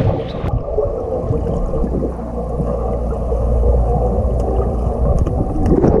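Splashing pool water, which about half a second in turns muffled as it is heard from underwater: a steady low churning rumble of water with the treble cut off and a few faint clicks.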